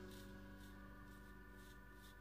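Near silence, with a faint steady hum of several held tones.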